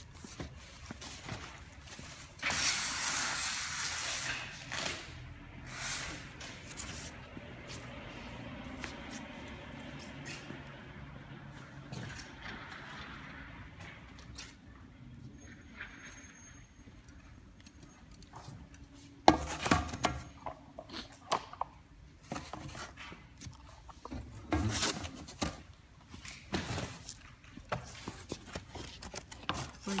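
Packing noises from a cardboard box and plastic wrap being handled. A loud rustling scrape comes a few seconds in, followed by scattered rustles and knocks, with a sharp thump about two-thirds of the way through.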